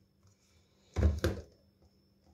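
Two short plastic knocks about a second in, as the motor unit and lid are taken off a hand blender's chopper bowl.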